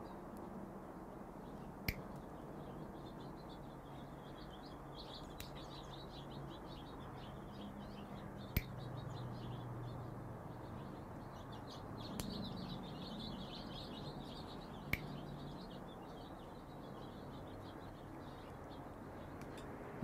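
Faint birds chirping in the background, broken by a few sharp clicks from Klein Kurve combination pliers cutting and stripping 10-gauge solid wire, the loudest about 2, 8.5 and 15 seconds in.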